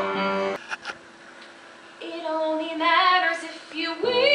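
A song from a stage musical: a held sung note with accompaniment breaks off about half a second in, and after a short pause a woman's voice sings a phrase with vibrato from about two seconds in.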